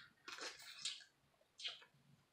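Close-up wet mouth sounds of eating crab meat: a sharp smack, then a short stretch of squishy chewing and sucking, and another smack near the end.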